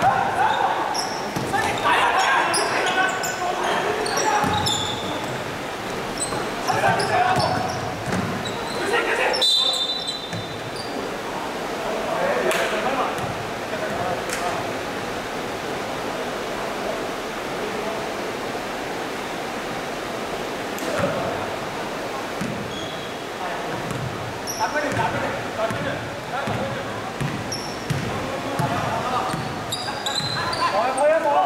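Basketball bouncing on an indoor court during play, with short high shoe squeaks and players calling out, echoing in a large sports hall.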